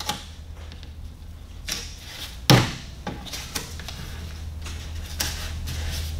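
Handling noise as a paper wraparound is fitted and taped around a plastic vent pipe on a workbench: a few soft clicks and rustles, with one sharper knock about two and a half seconds in, over a steady low hum.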